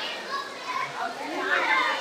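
Faint voices of a gathered crowd, heard in a short lull between phrases of a woman's speech over a microphone.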